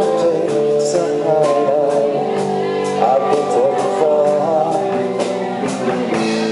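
Live rock band playing a slow song: electric guitar, drums and a male voice singing into a microphone.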